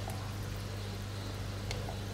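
Aquarium water trickling steadily over a constant low hum.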